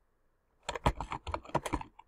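Typing on a computer keyboard: a quick run of about a dozen keystrokes, starting a little over half a second in and lasting just over a second.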